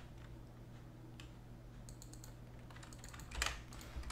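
Typing on a computer keyboard: a few scattered keystrokes, then two short runs of quick clicks in the second half.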